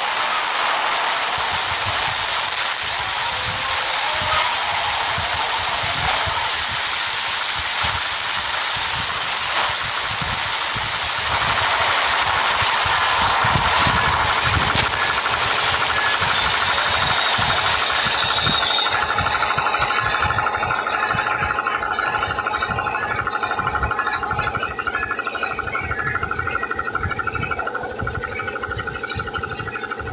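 A loud, steady hissing noise, strongest high up. About two-thirds of the way in it thins and drops in level, leaving a quieter noise with steady tones running through it.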